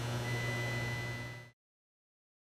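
Steady low electrical hum with a faint, thin high tone over it, fading out about a second and a half in, then silence.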